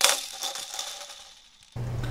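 Short intro sting: a bright, jingling sound that starts suddenly and fades over about a second and a half.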